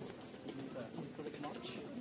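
Many feet of a walking procession stepping and shuffling on a paved road, with indistinct voices of the marchers around.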